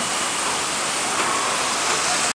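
Steady hiss with no other sound in it: the recording's constant background noise.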